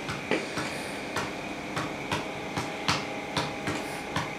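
A string of light, sharp clicks at uneven spacing, about three a second, over a steady background hum.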